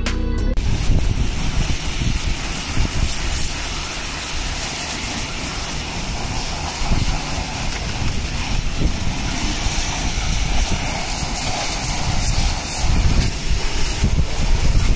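Pressure-washer jet spraying water onto a dirt bike's wheel, engine and frame: a steady hiss of spray that swells and dips as the lance moves.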